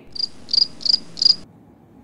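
Cricket chirping sound effect edited in over a pause: four short, high chirps at about three a second, stopping abruptly about one and a half seconds in.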